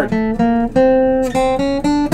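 Acoustic guitar playing about five single notes in turn, each plucked and left to ring, stepping upward in pitch. It is a fretting exercise of adjacent-fret notes with a pinky stretch, played low on the neck.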